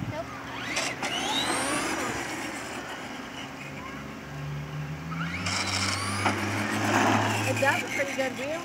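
Electric motor of a Traxxas Skully RC monster truck whining as it drives, its pitch sweeping up as it accelerates about a second in and again near the end.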